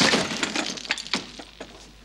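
A table laden with handcraft materials is overturned: a loud crash as it goes over, then a clatter of objects hitting the floor and scattering that dies away over about a second and a half, with one last knock near the end.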